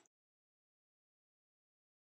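Silence: the audio track is blank, with no audible sound at all.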